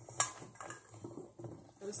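Acorn squash pieces tossed by hand in a stainless steel mixing bowl: one sharp clink against the metal about a quarter second in, then a few softer knocks.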